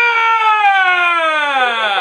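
One long, loud wail that jumps up in pitch and then slides slowly and steadily downward for about three seconds, as a spooky scare sound in a family prank.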